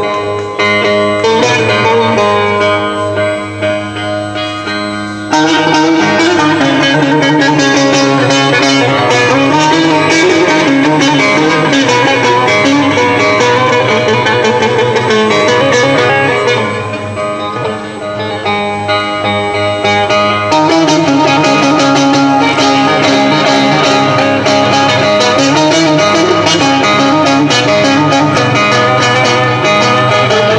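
Bağlama (long-necked Turkish saz) played solo through a PA system: an instrumental lead-in to a folk song, a steady run of plucked notes. It starts lighter and becomes fuller about five seconds in, softening briefly in the middle before picking up again.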